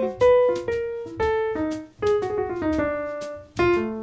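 Piano sound played live on a keyboard: a run of struck single notes and chords, each ringing and fading.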